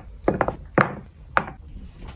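Handling sounds from a wooden drawer with a velvet-lined jewellery organizer: about four short knocks and taps in quick succession as necklaces are set into its slots.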